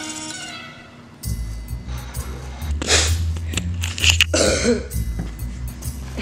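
A few plucked, mallet-like music notes fade out in the first second. Then a close microphone's low steady rumble takes over, with a sharp breathy burst about halfway through and a boy's "hmm" followed by a gasp near the end.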